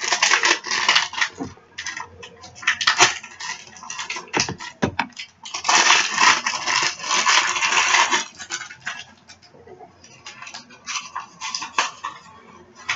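Foil blind-bag wrapper being handled, crinkling and rustling in short irregular bursts, with a longer continuous stretch of crinkling about six to eight seconds in.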